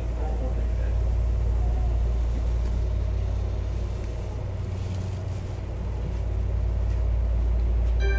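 Interior running sound of a Tobu 10030 series electric train car (MoHa 15663) under way between stations: a steady low rumble of wheels on rail and traction motors, on a field-chopper-controlled unit. The rumble eases slightly midway and swells again near the end.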